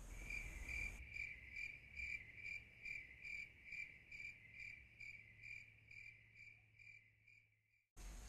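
Faint cricket chirping: one high chirp repeating evenly a little over twice a second, dying away near the end and cutting off.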